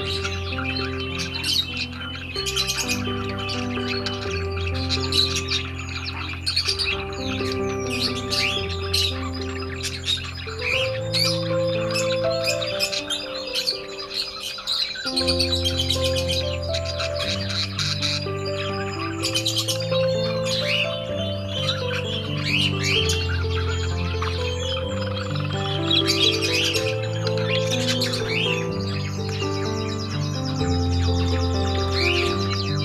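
Budgerigars chirping and chattering, busiest in the first third and again near the end, over soft background music with long held notes.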